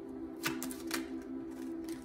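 Soft background music of steady held tones, with a quick, irregular run of sharp clicks and taps over it.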